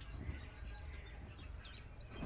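Quiet background with a low steady hum and a few faint, brief bird chirps.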